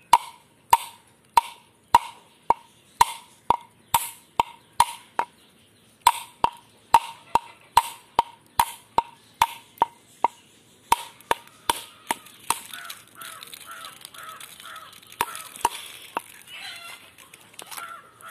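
A drinking glass struck repeatedly against a coconut shell to crack it open, with sharp knocks about two a second, each leaving a short glassy ring. There are brief pauses about five and ten seconds in, and the knocks thin out and fade after about twelve seconds.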